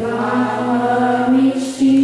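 A youth choir singing together, holding one long note, then moving to a louder held note near the end.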